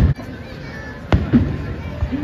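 Aerial firework shells bursting overhead: two sharp bangs, one at the start and another about a second in.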